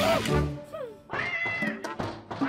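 Cartoon background music with a character's short, high-pitched wordless vocal sounds: a falling whine about two thirds of a second in, then a held squeal shortly after.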